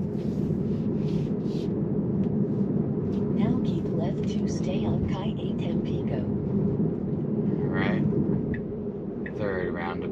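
Steady road and tyre noise heard inside an electric Tesla's cabin while driving at about 35 mph, with low voices over it at times.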